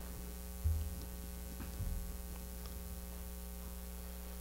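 Steady electrical mains hum in the microphone and sound system, with two soft low bumps about two-thirds of a second and just under two seconds in.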